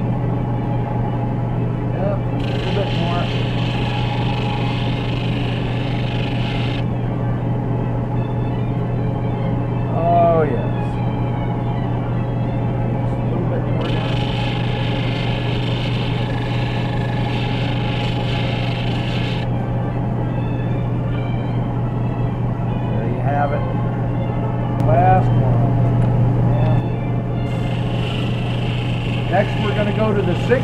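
End lap sander's motor running with a steady hum while a turquoise cabochon on a dop stick is sanded against its spinning disc. A higher hiss of stone on sandpaper comes and goes in three stretches: about two seconds in, around the middle, and again near the end.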